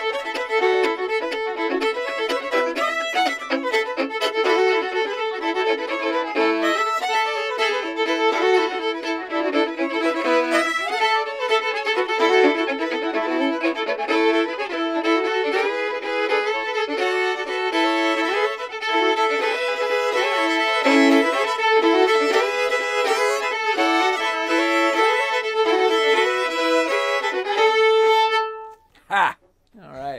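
Two fiddles playing a tune together, with an extra beat in its phrasing, ending on a long held note about a second before the end.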